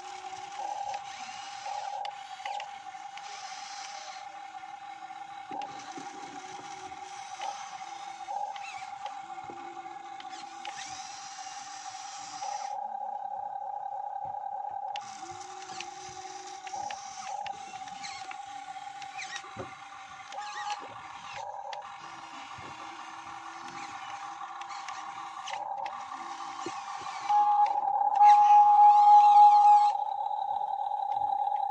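Motors of a radio-controlled model Hitachi 135US excavator whining steadily, with higher, noisier motor sound switching on and off every few seconds as the boom and arm move. The whine grows louder near the end as the arm is lowered into the water.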